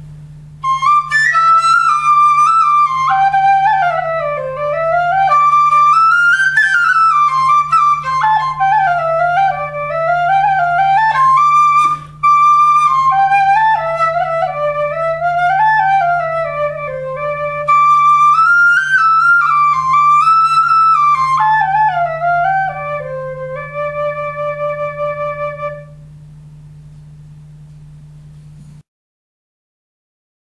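Pit-fired clay pennywhistle in the key of C playing a melody, with a brief pause about twelve seconds in, ending on a held low note a couple of seconds before the end. A steady low hum runs underneath.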